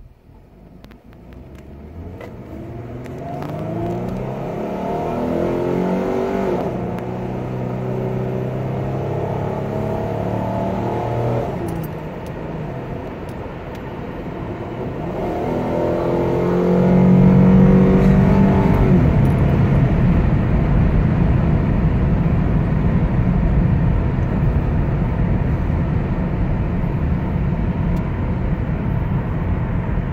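Ford Mustang (2014) with a cold air intake, heard from inside the cabin as it accelerates from a standstill. The engine note climbs in pitch, falls away briefly about twelve seconds in, climbs again to its loudest a few seconds later, then settles into a steady drone at cruising speed.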